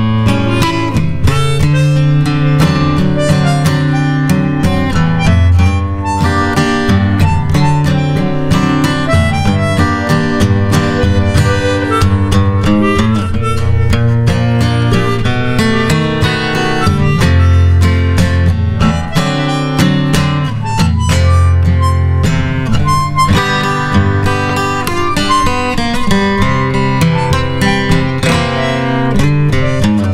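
Harmonica and strummed acoustic guitar playing the instrumental intro of a blues song, with the harmonica blowing the lead over the guitar's chords.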